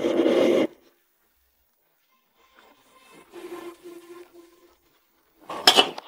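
Metal spatula scraping in a wok of sauce on a gas burner, cut off suddenly under a second in. Near the end, sharp clanks and scrapes of the wok against a metal pot as the sauce is poured in.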